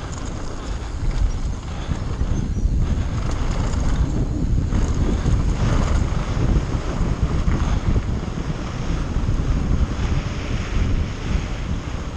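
Wind buffeting the microphone of a bike-mounted or rider-worn camera at speed down a dirt trail, mixed with tyres rolling on dirt and scattered rattles of the mountain bike over bumps.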